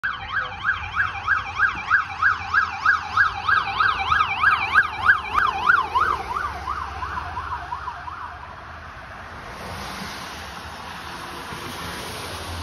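Electronic siren on a fire department assistant chief's SUV in fast yelp mode, sweeping up and down about four times a second, fading out as the vehicle passes and goes off. A steady hiss remains after the siren has faded.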